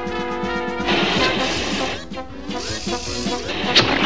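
Cartoon background music, joined about a second in by a loud rushing whoosh: the sound effect of a giant lawn vacuum sucking. A sharp crack comes near the end.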